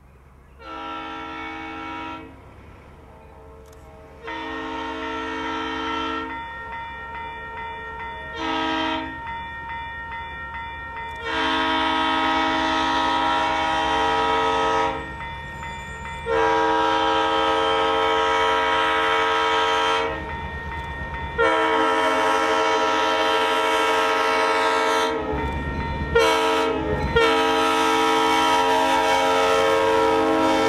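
EMD F7A diesel locomotive's air horn blowing the grade-crossing signal, long, long, short, long, then more long blasts. It grows louder as the train approaches and reaches the crossing near the end.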